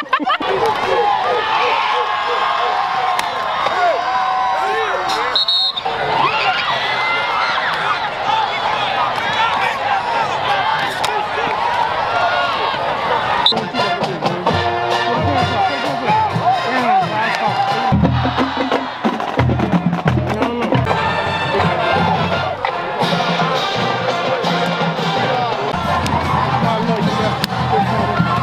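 Crowd voices and cheering mixed with music; a deep, thumping bass beat comes in about halfway through.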